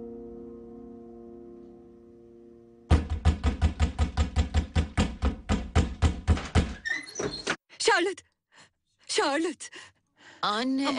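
A held musical tone fades away, then rapid, heavy pounding on a wooden door, about five blows a second for nearly four seconds. Voices cry out in short bursts after the pounding stops.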